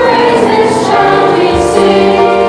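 Youth choir of children and teenagers singing together in held, sustained notes.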